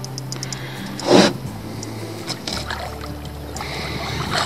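Small outboard motor running at idle with a steady low hum that drops lower about two and a half seconds in, and one short, loud burst about a second in.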